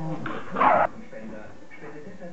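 A beagle puppy gives one short, loud bark about half a second in during rough play with another puppy.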